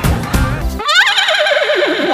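A moment of audience laughter and music, then a horse whinny: one long, shaky call that leaps up and falls steadily in pitch.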